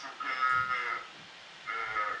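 A person singing held, slightly wavering notes, heard over a video-call connection. There are two phrases: one from just after the start to about a second in, and another starting near the end.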